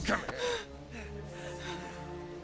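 Held, tense film-score notes under a teenage boy's sharp gasps and breaths as he struggles against a man gripping his collar.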